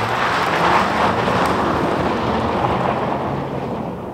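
2024 Mazda CX-90 Turbo S driving away down a dirt road, tyres crunching over gravel along with the engine, fading as it pulls off.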